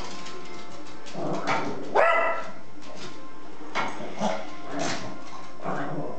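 Yorkshire terrier barking once, loud and short, about two seconds in, with a few fainter yips after it, from a dog too excited to settle at a ball game. Background music plays underneath.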